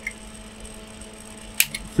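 Steady hum of a powered-up Altair MF-1200 power amplifier with its cooling fans running, broken by a single sharp click about one and a half seconds in, from switch handling at the front panel.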